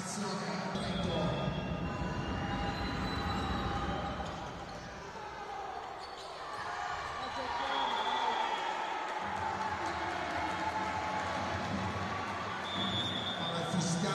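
Indoor volleyball match sound in a large hall: the ball struck during a rally over a steady din of crowd voices.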